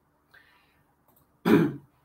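A man clears his throat once, briefly, about a second and a half in, after a pause in his speech.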